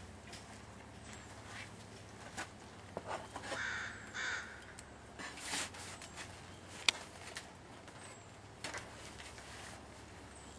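Wooden beehive parts knocking and clicking as the hive's cover and boxes are handled, with a sharp click about seven seconds in. A bird calls twice a little before the middle.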